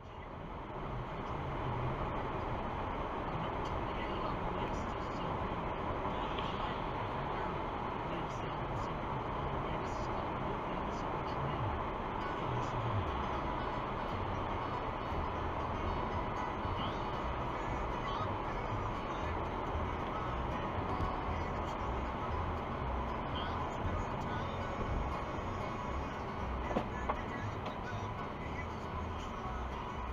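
Steady road and engine noise inside a car driving at highway speed, picked up by a dashcam's microphone, with a low rumble underneath.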